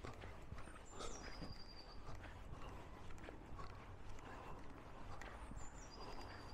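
Faint footsteps on a pavement at a walking pace. Twice, about a second in and again near the end, a high whistle steps down in pitch and then holds a note.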